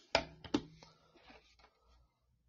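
Two sharp clicks or knocks about half a second apart near the start, the second with a brief low hum under it, followed by fainter scattered clicks that die away.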